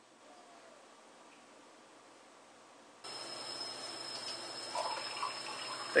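Near silence at first, then, about halfway through, a sudden start of water running in a steady stream out of a homemade 1-liter bottle activated-carbon filter into a drinking glass in a sink.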